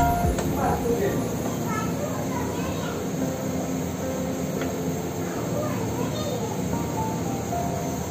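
Background music over a steady rushing noise, with short pitched fragments scattered through it.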